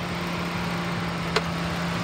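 A 2012 Ford Explorer's 3.5-liter V6 idling smoothly and steadily, heard close up at the open engine bay. There is one short click about a second and a half in.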